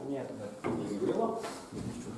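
Speech: a man's voice in a classroom says a short 'no', then more talk follows.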